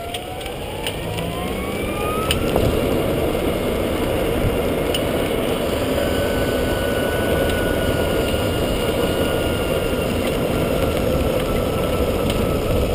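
EZGO RXV golf cart driving along a path, its drive whine rising in pitch over the first couple of seconds as it picks up speed, then holding near-steady and sinking slightly. Tyre and wind noise run under it throughout.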